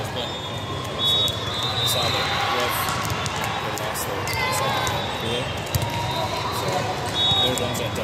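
Busy indoor volleyball hall with several courts in play: overlapping voices and the slaps and bounces of volleyballs, with a few brief high squeaks.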